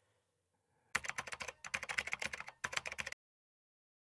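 Computer keyboard typing: a quick run of key clicks in three short bursts, starting about a second in and stopping just after three seconds.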